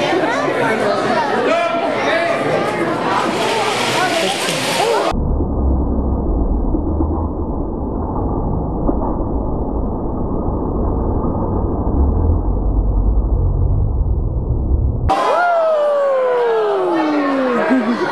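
Chattering crowd in a large hall. About five seconds in, the sound turns muffled and deep for about ten seconds: a slowed-down instant replay of the pinewood derby race, with a low rumble of the wooden cars running down the aluminium track under lowered crowd noise. The crowd voices then return with a long falling glide in pitch.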